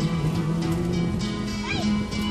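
Two acoustic guitars strumming and holding chords between sung lines. Near the end comes a brief, high, rising squeal.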